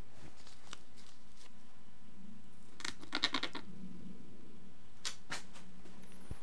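Gloved hands scraping and rustling in compost while setting soil blocks into small plastic pots: faint scrapes early on, a short run of scratching about three seconds in, and two brief scrapes near the end.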